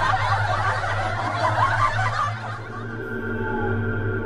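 Snickering laughter for the first two seconds or so, giving way to a steady ambient music drone of held tones, over a low hum.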